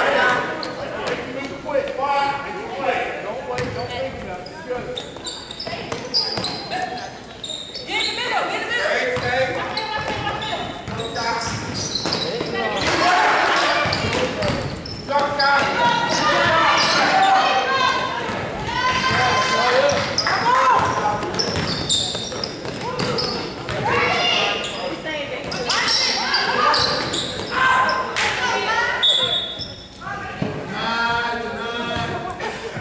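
Sounds of a basketball game in a gymnasium: a ball bouncing on the hardwood court amid calling voices of players and spectators, echoing in the large hall.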